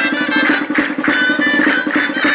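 Riojan gaitas (dulzainas, double-reed shawms) playing a lively folk dance tune in a reedy, piercing tone, over fast, steady percussion clicks.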